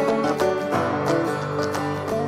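Background music: a country-style tune on strummed acoustic guitar with a steady beat.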